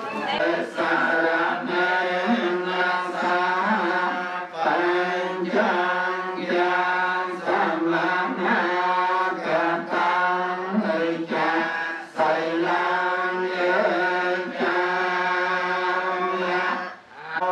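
Buddhist chanting by voices over a microphone, recited syllable by syllable on a steady pitch in long phrases with brief breath pauses between them.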